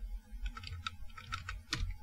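Computer keyboard typing: a quick run of key clicks, the last one near the end the loudest, over a low steady hum.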